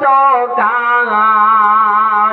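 A man singing a Bengali Islamic gazal (ghazal) into a microphone: a short phrase, then a long steady held note.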